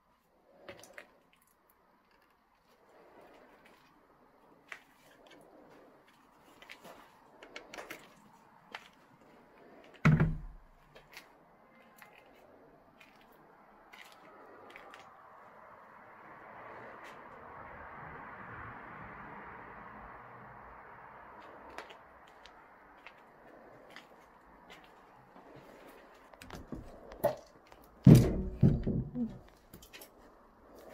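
Footsteps and handling noises of a person moving through a debris-strewn abandoned building: scattered small clicks and crunches, a loud thump about ten seconds in, and a cluster of loud knocks and thumps near the end. A soft rushing sound swells and fades in the middle.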